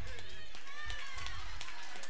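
A congregation's scattered hand claps mixed with several voices calling out at once.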